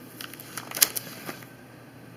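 Plastic sleeve pages of a card binder crackling and rustling as a page is turned, with a sharp click a little under a second in.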